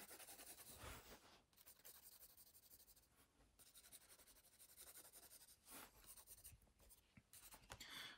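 Faint scratching of a pencil sketching on sketchbook paper, in short irregular strokes with brief pauses between.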